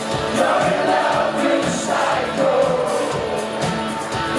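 Live rock band playing, heard from among the audience: a male lead vocal over electric guitar and drums, with many voices singing along.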